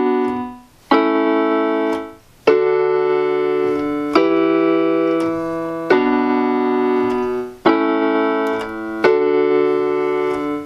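Electronic keyboard on a piano voice playing block chords with both hands: a new chord struck about every one and a half seconds and held, with a low bass note joining the chords from about two and a half seconds in.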